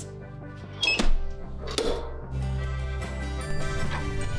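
Background music, with a loud metallic clack about a second in as a clamshell heat press is pulled down and locks shut, followed by a second, softer knock.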